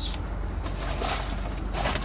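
Steady low hum and background noise inside a car cabin, with brief soft noises about a second in and again near the end.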